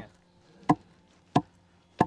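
Long pestle pounding in a stone mortar, crushing dry ginger, cardamom and pepper to a powder: a steady beat of dull thuds about one and a half strokes a second, three or four strokes.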